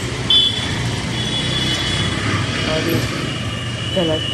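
Street traffic: a steady rumble of vehicle engines on a busy town road. A brief knock comes about half a second in, followed by a thin, steady high-pitched whine.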